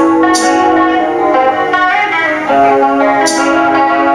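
Black metal band playing live in a slow passage: electric guitar holding long sustained chords that change about halfway through, with a cymbal crash just after the start and another near the end.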